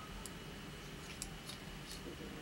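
Faint, scattered clicks of metal circular knitting needle tips knocking together as brioche stitches are worked, about four light ticks over two seconds.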